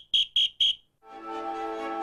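Three short, high electronic beeps about a quarter second apart. After a brief silence, transition music fades in about halfway through.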